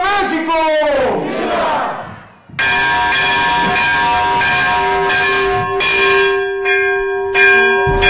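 A last shouted '¡Viva!' of the Grito de Independencia. Then, from about two and a half seconds in, the ceremonial balcony bell is rung repeatedly, each stroke setting off a long, steady ring.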